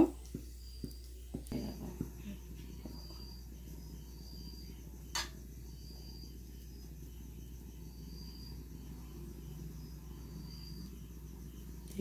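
Quiet room with a few light clicks and knocks from hands working food in a steel mixing bowl, one sharper click about five seconds in. A faint high chirp repeats about once a second over a low steady hum.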